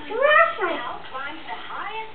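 A high-pitched voice making wordless sounds that glide up and down, a loud one in the first half-second and shorter, fainter ones after.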